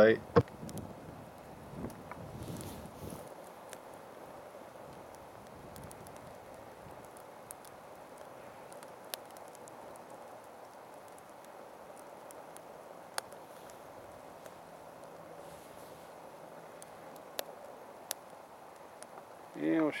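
Wood fire burning rain-soaked sticks in a StoveTec rocket stove's combustion chamber: a faint steady rush with a few sharp pops several seconds apart as the wet sticks dry out and catch.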